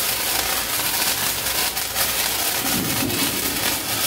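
A handheld sparkler fizzing steadily as it burns: an even, crackling hiss.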